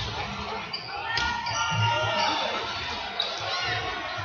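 Indoor football being played on a sports-hall floor: the ball bouncing and being kicked, with players' shouts ringing in the large hall.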